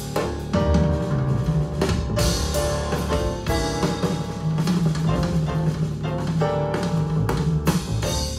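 Recorded music with a drum kit playing a steady beat over bass and sustained melodic notes, reproduced through Wilson Alexandria XLF floor-standing loudspeakers driven by an Accuphase E-800 Class A integrated amplifier.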